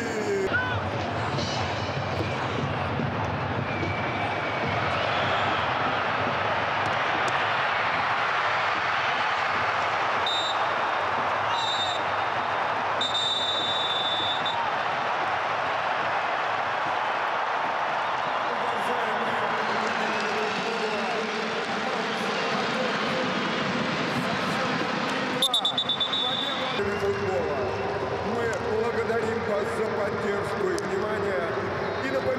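Stadium crowd noise, a steady din of many voices. Whistle blasts cut through it: two short ones and a longer one about 10 to 14 seconds in, and another near 26 seconds. In the second half the crowd takes up a chant.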